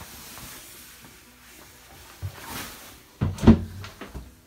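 A door or hinged panel being opened or shut: a light knock a little after two seconds, then a loud thump about three and a half seconds in.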